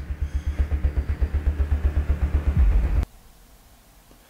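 Low, throbbing outro sound effect under an end-card logo, pulsing about nine times a second, that cuts off suddenly about three seconds in.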